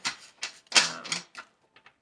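A deck of oracle cards being riffle-shuffled by hand: a quick run of card clicks and flutters, thinning to a few faint ticks near the end.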